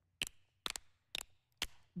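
Four finger snaps in an even rhythm, about two a second.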